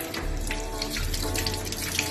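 Tap water running into a stainless steel sink while a crayfish is rinsed under it, with background music.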